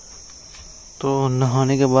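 Insects chirring: a steady, high-pitched buzz that runs throughout, with a man speaking over it from about a second in.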